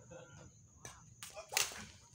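Badminton rackets striking a shuttlecock in a fast rally: several sharp hits in quick succession, the loudest and longest about one and a half seconds in.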